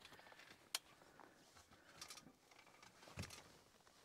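Near silence, broken by one sharp click just before a second in, a few faint short rustles about two seconds in, and a soft low thump a little after three seconds.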